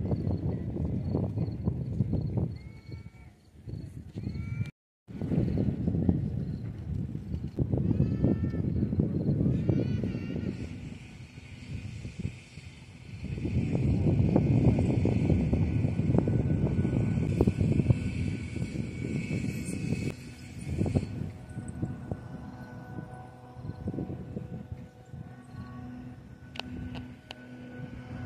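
Wind buffeting the microphone in gusts: a low rushing rumble that swells and eases, cutting out briefly about five seconds in. A few faint high chirps come early on, and a steady high hiss runs for about ten seconds in the middle.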